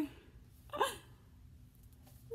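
A single short vocal sound from a woman, a quick voiced yelp, about a second in; the rest is quiet room tone.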